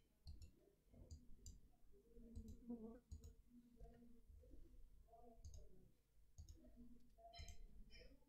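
Faint, scattered clicks of a computer mouse, some in quick pairs, over quiet room tone.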